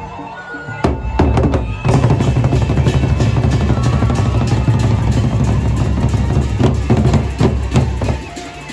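Gendang beleq, the large Sasak barrel drums of Lombok, played together by a group of drummers: a few separate strokes about a second in, then dense, loud drumming that breaks off just before the end.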